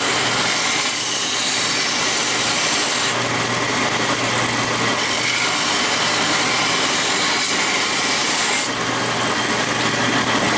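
Benchtop belt sander running with a steady motor hum while a long strip of frame wood is pressed along the moving belt. The sanding hiss grows stronger about three seconds in and eases again near the end as the wood is worked against the belt.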